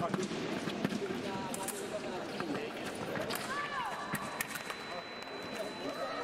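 Sabre fencing bout: sharp clicks and knocks of blades and footwork on the piste, heard over voices echoing in a large hall, with a raised voice in the middle.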